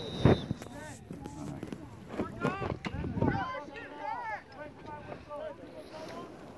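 Several voices shouting and calling across an open playing field during a lacrosse game, too distant or overlapping to make out words. Two low gusts of wind buffet the microphone, one just after the start and one about three seconds in.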